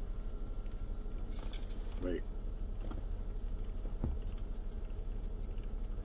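Steady low hum inside a car, with a few soft clicks and knocks as a metal spoon digs into a carton of hard ice cream.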